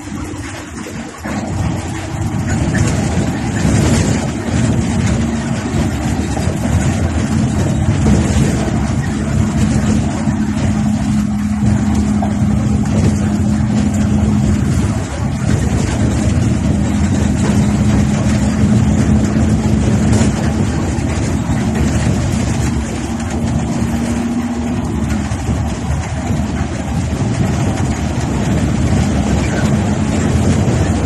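Inside a moving intercity coach at the driver's seat: the bus's engine drone and road noise at cruising speed, loud and steady. The sound swells about two seconds in, and a steady low hum runs through the middle, dropping out briefly about halfway and fading near the end.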